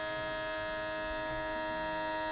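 Cordless electric hair clippers, guard off, running with a steady buzz while trimming the hair around a boy's ear.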